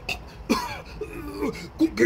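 A man's gravelly Cookie Monster character voice groaning and coughing, with a long falling groan about half a second in.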